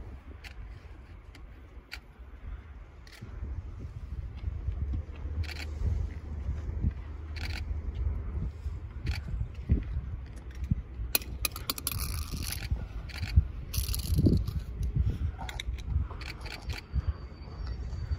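Nagano Electric Railway 3500 series electric train rolling slowly across the depot yard's points: a low rumble with scattered wheel clicks over the rail joints, and loud bursts of scraping wheel-on-rail noise partway through.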